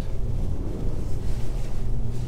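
Engine and tyre noise inside the cab of a next-gen Ford 4x4 driving on snow and ice, heard as a steady low rumble with a faint engine hum.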